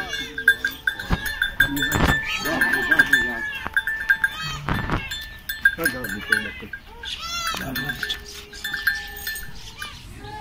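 Goats bleating in a string of high, arching calls, over a steady high-pitched tone and a few sharp knocks.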